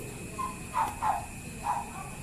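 Short animal calls, four in quick succession, each dropping in pitch.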